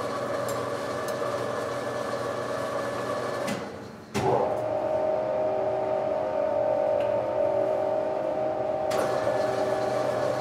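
Steady hum of industrial laundry machines with several held tones. About three and a half seconds in it fades, a sharp knock follows, and a different, steadier hum with one strong tone takes over.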